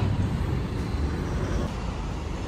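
Roadside traffic noise: a steady low rumble of cars on the road beside the pavement.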